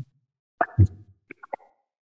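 A low thump picked up by a table microphone about half a second in, followed by three quick, sharp knocks.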